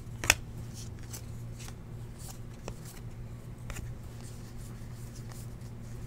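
A stack of 2015 Topps Valor football trading cards being flicked through by hand, the cards sliding and ticking against each other, with one sharp click just after the start, the loudest sound. A steady low hum runs underneath.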